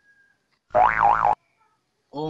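A short comic sound effect, starting just under a second in and lasting about two-thirds of a second. Its pitch wobbles up and down twice, like a cartoon boing, and it starts and stops abruptly.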